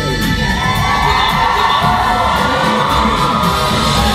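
Loud music playing through the venue's sound system while an audience cheers and whoops.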